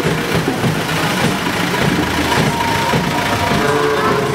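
A slow-moving truck's engine running steadily close by, with music playing behind it.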